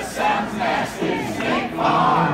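Audience voices singing and chanting along together, with little instrumental backing underneath.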